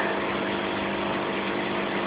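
Marine aquarium's water pump running: a steady hum under an even wash of water noise.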